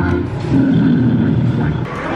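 A recorded animal call played through an arcade game's speaker when a child presses one of its animal buttons: a loud, rough, low sound that swells just after the start and eases off toward the end.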